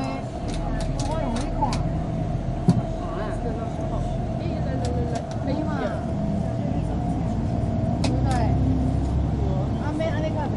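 Inside a bus driving through town traffic: engine and road rumble with a steady hum, scattered clicks and rattles, and a sharp knock just under three seconds in. Voices talk in the background.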